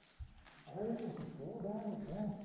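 A person's wordless voice, a string of drawn-out sounds that waver up and down in pitch, starting under a second in.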